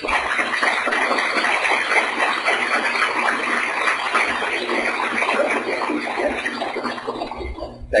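Audience applauding steadily, stopping abruptly near the end.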